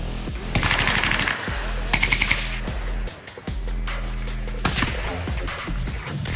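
Rapid bursts of automatic gunfire from an AR-style rifle: a burst of about a second starting half a second in, a short one at about two seconds, and another near five seconds. Background music with a steady beat plays throughout.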